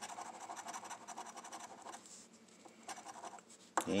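A large metal coin scratching the coating off a lottery scratch-off ticket in quick rapid strokes. It stops about two seconds in, then scratches again briefly a little later.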